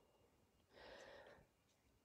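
Near silence, with one soft breath out, under a second long, about the middle.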